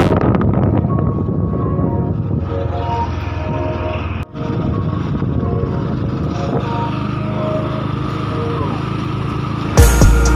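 Motorbike riding noise: a steady low rumble of engine and wind on the microphone while moving along the road. The sound cuts out briefly about four seconds in, and faint music runs underneath.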